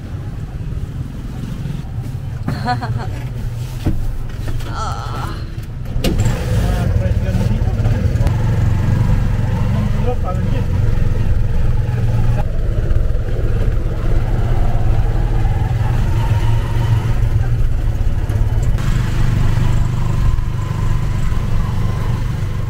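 Small motorcycle engine of a Philippine tricycle running steadily under way, heard from inside its sidecar, with a low drone that gets louder about six seconds in.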